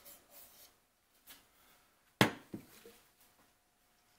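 Quiet room tone, broken about two seconds in by one sharp knock and a fainter one just after.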